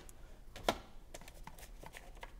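Faint clicks and taps of cardboard game tiles and the game box being handled, with one sharper tap a little under a second in.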